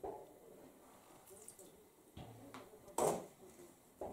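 A spoon scooping granulated sugar from a plastic tub, with a few faint scrapes and one short, louder sound about three seconds in.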